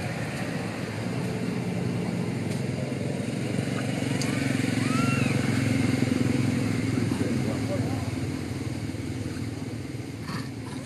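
A motor vehicle's engine running, growing louder toward the middle and then easing off, with a couple of faint high chirps about four to five seconds in.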